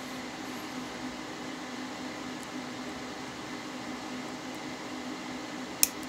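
Steady low hum and hiss of room background noise, with one sharp click near the end.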